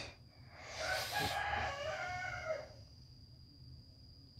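A rooster crowing once, a single drawn-out call of about two seconds that starts just under a second in and falls slightly at the end.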